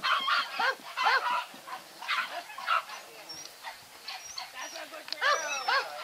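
A dog barking in short, high barks: a quick run of them in the first second, a few more around two to three seconds in, and another loud run near the end.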